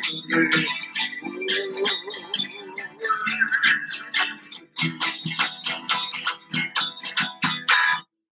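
Acoustic guitar strummed in a brisk, steady rhythm while a man sings a repeated chant on the syllables 'pomai'.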